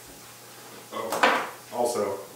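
Plastic food containers handled on a kitchen counter: a short burst of rustling and clattering about a second in, then a sharper knock near the end.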